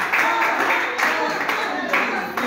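Party hall din: recorded music with a singing voice and voices of the crowd, with scattered hand clapping.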